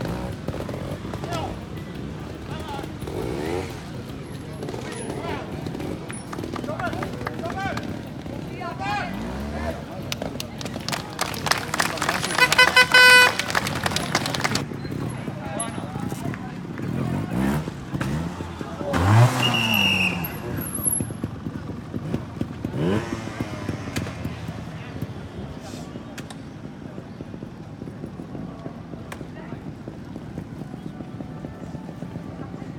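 Trials motorcycle engines blipped and revved in short rising bursts, the biggest rev about two-thirds of the way through, amid people's voices. A loud steady pitched tone sounds for about three seconds near the middle.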